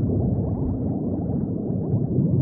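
Underwater bubbling: a steady, dense stream of quick rising blips.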